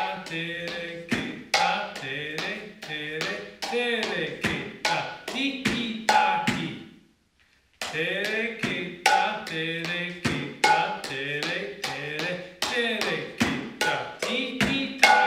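Mridanga, the two-headed South Indian barrel drum, played by hand in a quick, steady run of te-re-ke-ta-style strokes, two to three a second, with a voice chanting along. The playing stops for about a second just past the middle, then starts again.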